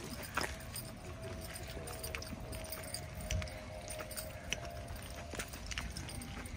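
Footsteps on asphalt, an irregular step about every second, over faint outdoor background with a faint steady hum.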